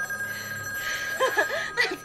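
A steady high-pitched tone held for about two seconds, stopping at the end. Partway through there is a short, soft vocal sound from a person.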